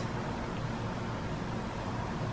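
Quiet, steady background hiss of room tone, with no distinct sound standing out.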